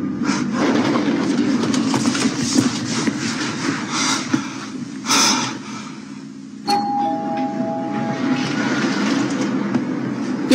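Two-note elevator chime, a higher note then a lower one ringing together for about a second and a half, signalling the car's arrival as the doors open. Before it there is a steady noisy background with scattered knocks.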